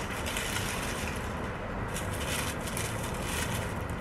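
Steady low outdoor rumble with a few faint rustles of cut zinnia stalks being handled.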